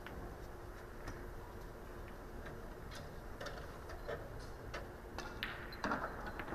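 Sparse light clicks and taps from pool balls and cue on a Chinese eight-ball table after a shot, over a low room hum, with a somewhat louder knock near the end.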